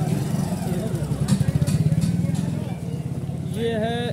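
A motorcycle engine running as the bike passes close by, loudest about halfway through and then fading, with voices near the end.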